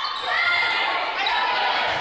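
Game audio from an indoor volleyball rally: athletic shoes squeaking on a gym court, echoing in a large hall, with voices in the background.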